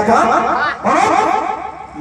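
A man's voice over the stage sound system, breaking into quick repeated pulses of pitch without clear words, then dropping away near the end.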